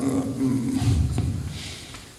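A man's drawn-out, low hesitation murmur ("e-e-e" / "mmm") held close to a handheld microphone while he searches for a word, fading away near the end.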